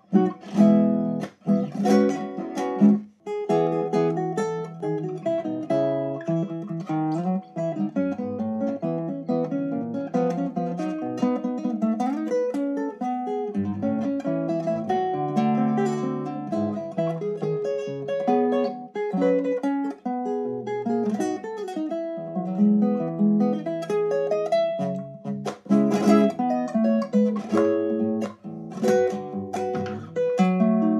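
Solo nylon-string classical guitar playing a chamamé arrangement: a plucked melody over bass notes. Sharp struck chords come in the first few seconds and again in the last few seconds.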